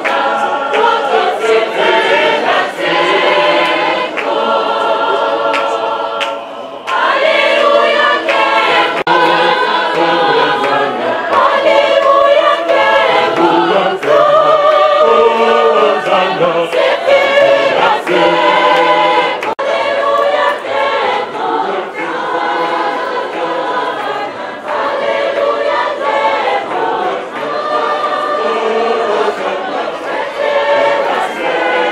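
A choir of voices singing a hymn in long held notes.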